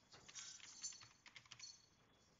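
Faint typing on a computer keyboard: a quick run of keystrokes that stops shortly before the end.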